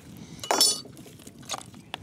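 A steel knife clinking as it cuts into a softshell turtle carcass: one sharp metallic clink about half a second in, then lighter clicks near the end.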